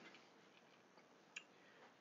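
Near silence: room tone, with one faint short click about a second and a half in.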